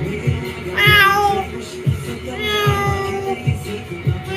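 Background music with a steady beat, with two long downward-sliding meows over it, the first about a second in and the second in the second half.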